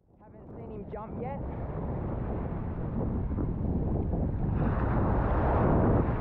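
Small waves breaking and washing up a sandy beach, with wind buffeting the microphone. The sound fades in at the start and swells as a wave breaks around the feet near the end.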